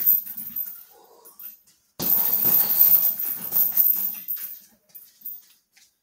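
A hanging heavy bag being struck and shaken in a clinch drill: a burst of knocking and rattling fades in the first second, then another starts suddenly about two seconds in and dies away over about two seconds.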